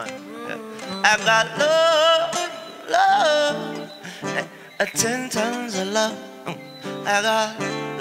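Live acoustic music: an acoustic guitar plays under a wordless melody line held with vibrato, which swells about a second in and again near the end.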